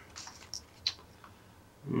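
Faint handling sounds of small nylon gear pouches on a table: a few light clicks and a soft rustle, with one sharper tick just under a second in.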